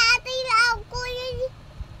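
A young boy's voice in a sing-song chant, holding a nearly steady pitch on three drawn-out phrases, then pausing briefly near the end.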